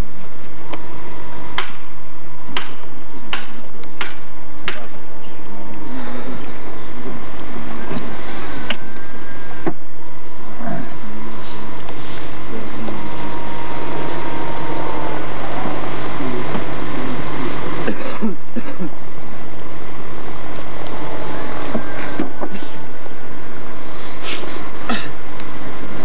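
Gravelly earth being shovelled and pushed into a grave, with scattered sharp knocks and faint voices under a steady hum and hiss.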